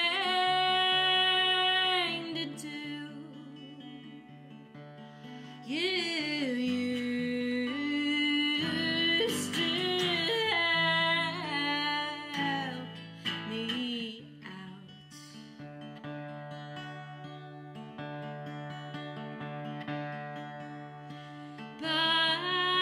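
A woman singing long held notes that slide in pitch, accompanied by a Godin guitar. The voice fades about two-thirds through, leaving softer guitar playing.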